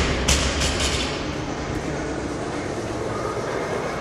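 Bumper-plated barbell bouncing and rattling on a rubber gym floor after being dropped, a few knocks in the first second, followed by a steady rushing noise.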